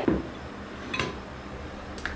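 A single light clink about a second in, a glass mixing bowl knocking against a wire mesh strainer as egg-coated chicken is tipped into it to drain.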